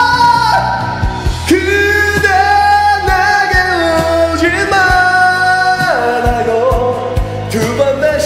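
A man singing a Korean pop ballad in a high register over a karaoke backing track with drums. He holds long notes and slides between pitches.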